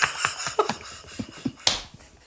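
Men laughing in short breathy bursts, with a sharp click near the end.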